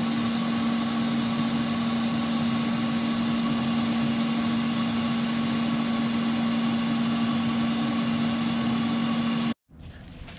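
TIG welding arc running steadily, a continuous hum with a hiss, as filler rod is hand-fed into a steel bracket joint on a front suspension spindle. It cuts off suddenly near the end.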